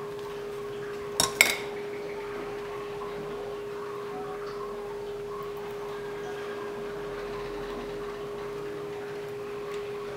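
A small stainless-steel pot set down on a cutting board: two quick metallic knocks about a second in, the second louder, over a steady hum.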